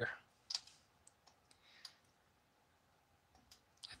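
A few faint, separate clicks and light handling noises as a PC fan's cable plug is pushed onto a motherboard fan header.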